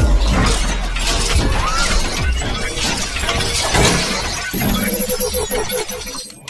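Cinematic intro music with a run of sharp impact and shatter sound effects over a deep bass, and a short pitched sting near the end.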